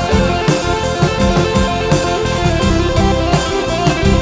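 Live cumbia band playing an instrumental passage: electric guitar lead over keyboard, bass guitar and drum kit with a steady beat.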